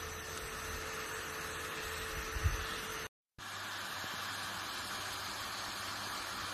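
Portable neck fan running: a steady whirring hiss of air with a faint motor hum. It breaks off for a moment about three seconds in, then a similar steady whir resumes, with a soft bump shortly before the break.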